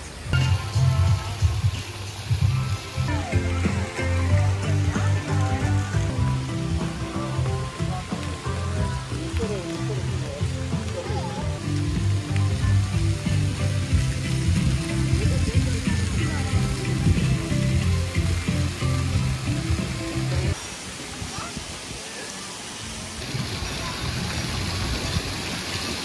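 Background music with a steady bass line. About twenty seconds in the bass drops out, leaving lighter sound with a hiss of splashing water.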